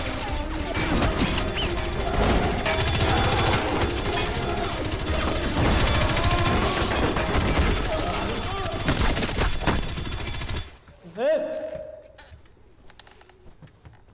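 Action-film soundtrack of a gunfight: rapid bursts of gunfire over music and voices, stopping abruptly about eleven seconds in, after which it turns much quieter.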